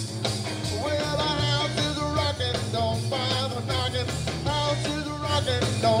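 Live blues-rock band playing an instrumental stretch between sung lines: electric guitar playing a lead line with bent, wavering notes over bass guitar and drums.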